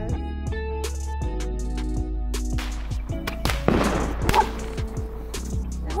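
Background music with plucked guitar notes over sustained tones, with a short rush of noise about four seconds in.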